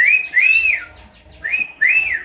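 A cockatiel whistling: four clear notes, each rising and then falling in pitch, in two pairs about a second apart.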